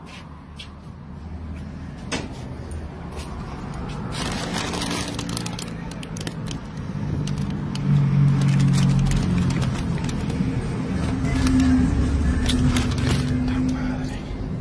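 Handling noise from a handheld phone recording: scattered clicks, knocks and rustling of snack bags and shelf goods being moved, over a steady low hum. The sound grows louder through the first half, and held low tones come in from about halfway.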